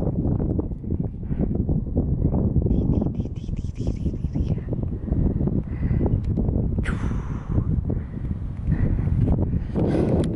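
Wind buffeting the camera's microphone, a loud low rumble that rises and falls in gusts.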